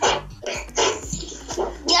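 A dog barking in several short barks spread over two seconds.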